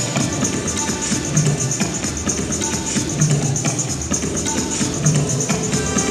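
Live electronic music played on DJ gear: a quick, even high percussion pattern like a shaker over a low bass note that recurs about every two seconds.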